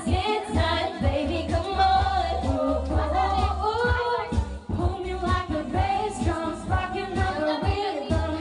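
Women's voices singing into a handheld microphone over loud amplified pop music with a steady, heavy bass beat.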